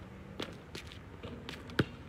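Sneaker steps and a basketball thudding on an outdoor asphalt court: a thud about half a second in and a louder, sharper one near the end, with lighter footfalls between.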